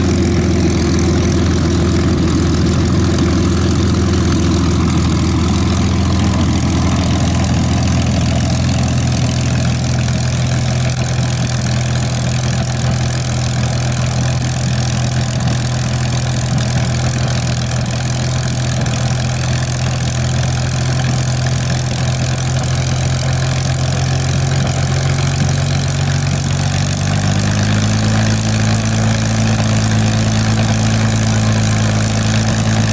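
Supermarine Spitfire's Rolls-Royce Merlin V12 engine running at low taxiing power, a steady deep note from the turning propeller, rising slightly in pitch near the end.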